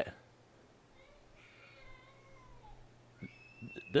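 A faint, high crying wail in the background, heard twice: once wavering, then a short rising cry near the end. It sounds like a baby crying, though there is no baby in the house.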